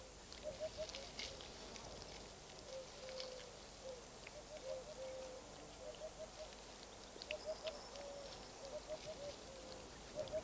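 Faint wildlife ambience: a bird calling over and over with short low notes in twos and threes and an occasional longer note, with scattered faint ticks.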